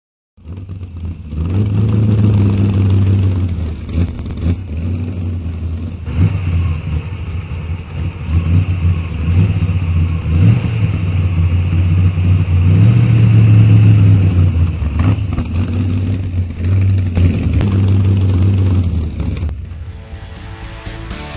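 A motor vehicle's engine running with a steady low note that swells and eases several times as it is revved, with a few short clicks along the way.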